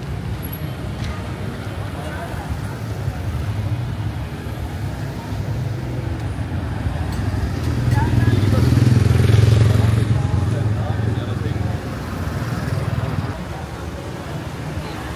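Busy street traffic with the voices of passers-by; a motor vehicle passes close, its engine rumble building to a peak a little past the middle and then fading.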